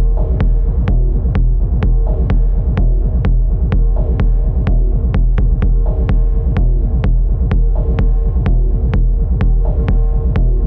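Dark minimal techno played live on hardware drum machines, synths and a modular synth: a deep, steady bass drone under held synth tones, with a sharp click-like percussion hit about twice a second.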